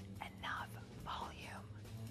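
A woman's faint whispered voice, a few breathy syllables, over quiet background music.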